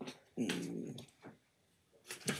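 A short wordless vocal sound from a person, about half a second long, with a click just before it.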